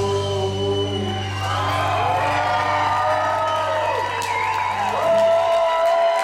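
Live band holding a long final chord at the end of a song, the bass note cutting off near the end, with a few whoops from the audience.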